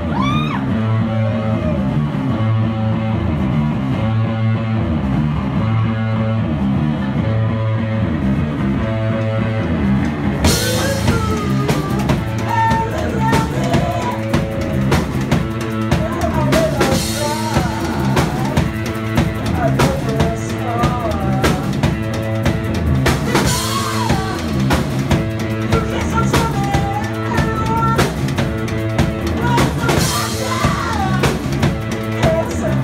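Live rock band playing: bass guitar and drum kit driving a steady rhythm, with cymbals crashing in about ten seconds in and the band getting fuller. A singer's voice rides over the music in the second part.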